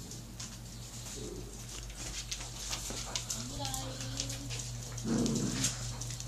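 Dogs playing on a laminate floor: claws and toys clicking and tapping throughout, a thin whine lasting about a second a little past the middle, and a short, louder dog vocal about five seconds in.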